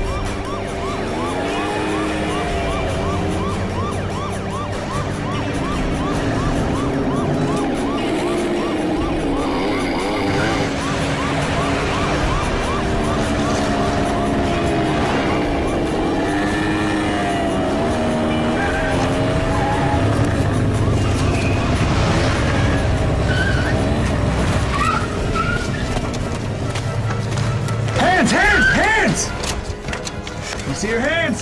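Action-film chase soundtrack: music mixed with the engines of small motor scooters riding off. Wavering tones rise and fall throughout, and the low rumble grows heavier in the second half.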